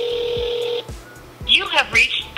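Phone ringback tone heard over a mobile phone's speakerphone: one steady ring that stops a little under a second in. About a second and a half in, the automated voicemail greeting starts, the sign that the call is going unanswered.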